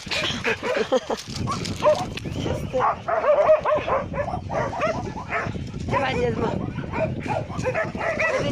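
Several dogs barking over one another, a dense, unbroken run of barks.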